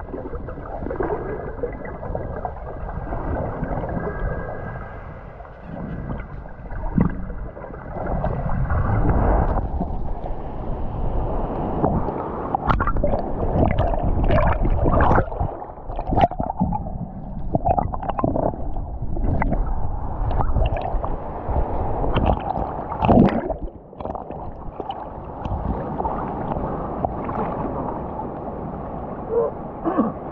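Sea water gurgling and sloshing around an action camera held underwater, with bubbles and crackles as the camera moves near the surface. A thin steady tone stops suddenly about a third of the way in.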